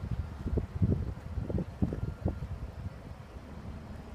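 Wind buffeting the microphone in gusts, a low rumble with irregular thumps that eases off after about two seconds.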